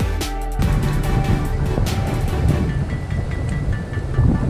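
Electronic background music, joined about half a second in by a loud low rumble of wind on the microphone, with the music carrying on more faintly underneath until near the end.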